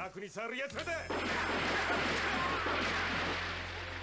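A cartoon gunshot and blast: a sudden bang about a second in, followed by a long noisy rumble that slowly fades over about three seconds.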